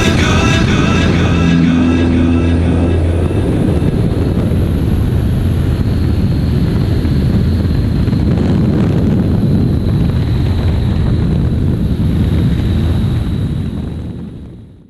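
Steady drone of a Great Lakes 2T-1A-2 biplane's four-cylinder Lycoming engine and propeller in flight, heard from the open cockpit with a rush of air. Music trails off over the first few seconds, and the drone fades out at the very end.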